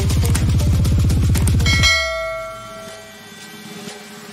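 Background music with a fast, pulsing bass line that stops just before two seconds in, followed by a single bell-like ding that rings out and fades away: a subscribe-button bell sound effect.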